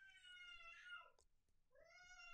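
A baby screaming in the distance: two long, faint, high wailing cries. The first trails off with a downward slide about a second in, and the second starts near the end.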